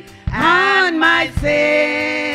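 Women singing a gospel praise song into microphones: a short rising-and-falling phrase, then one long held note.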